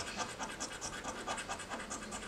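A coin scraping the coating off a paper scratch-off lottery ticket in quick, repeated short strokes, about five a second.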